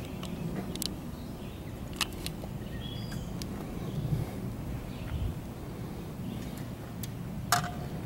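Quiet outdoor background with a few light clicks and knocks from fishing rods and tackle being handled on an aluminium boat, the loudest click just before the end.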